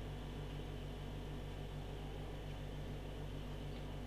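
Quiet room tone: a steady low electrical hum with faint hiss and no distinct sounds.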